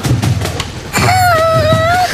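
Cartoon soundtrack: music with a few knocks in the first second, then one held, slightly wavering high note from about a second in.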